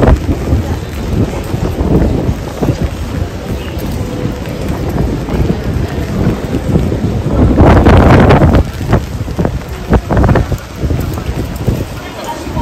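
Rain-soaked street ambience with wind buffeting the microphone in uneven low rumbles, loudest in a gust about eight seconds in.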